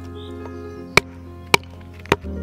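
Two sharp chops of a small hatchet striking wood, about a second in and half a second apart, over background music.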